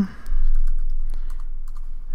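Typing on a computer keyboard: scattered light key clicks over a low rumble that sets in just after the start and slowly fades.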